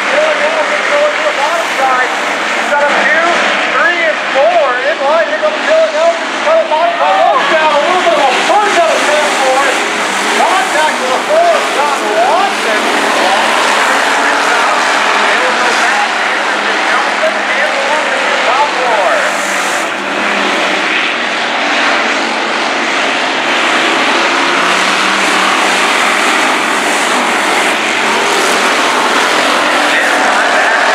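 Hobby stock race cars' engines running laps on a dirt oval, several at once, their pitch rising and falling as they accelerate and lift around the track, busiest in the first dozen seconds.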